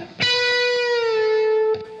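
Fender Stratocaster electric guitar playing a single held lead note that wavers and eases slightly down in pitch, then stops, followed by one short picked note near the end.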